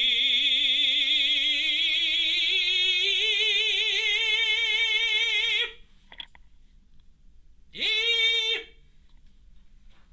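Tenor singing a sustained 'ee' vowel with vibrato, gliding slowly upward in pitch for about five and a half seconds, then, after a short pause, a second brief held note near the top pitch.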